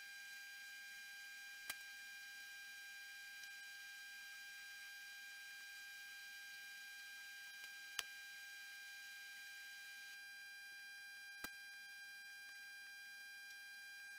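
Near silence: a faint steady electrical whine of several thin tones over hiss, broken by three brief faint clicks.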